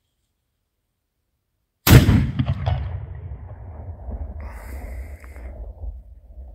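A steel one-third-scale M1841 6-pounder black powder cannon firing a golf ball on a two-ounce Pyrodex RS charge: a single loud boom about two seconds in, followed by a low rumble that slowly dies away.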